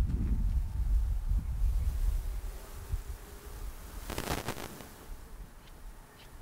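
Wind buffeting the microphone, a low rumble that is strong at first and dies away over the first few seconds, with a short burst of hiss about four seconds in.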